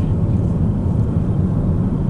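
Car driving, heard from inside the cabin: a steady low rumble of road and engine noise.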